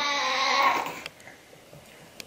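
A baby's drawn-out whiny vocal sound, about a second long, then fading away.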